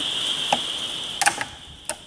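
A few sharp clicks and knocks of plastic buckets and lids being handled, over a steady high-pitched whine that cuts off about two-thirds of the way through.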